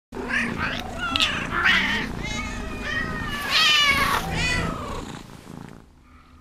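A cat meowing in a run of short calls, the longest and loudest about three and a half seconds in, over a low purr. It fades out near the end.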